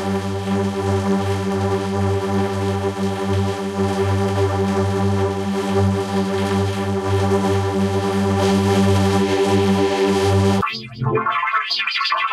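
Effects-processed logo music: a sustained synthesizer drone with a low, buzzy organ-like tone holds steady, then cuts off abruptly about ten and a half seconds in. A bright, choppy, distorted sound takes over.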